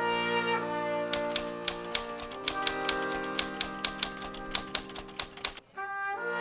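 Typewriter key clicks, a sound effect for a caption being typed out letter by letter, in a quick, uneven run that starts about a second in and stops shortly before the end. Under it, background music with long held chords, which drops out briefly near the end.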